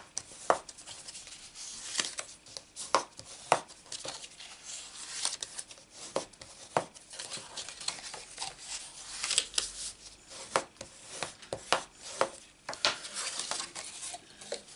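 Cardstock being handled and folded along its score lines while the creases are burnished with a hand tool. It sounds as irregular short scrapes and rubs, with sharp crackles and taps of the stiff card against the mat.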